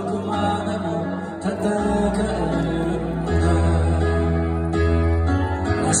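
Live pop concert music recorded from the audience: a male singer with band accompaniment, guitar prominent over a steady bass.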